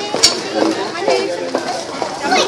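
Overlapping voices of several people chattering, with one sharp click near the start.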